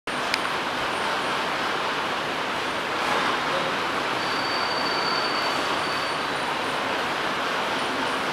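Steady rushing background noise in a room, with a brief click just after the start.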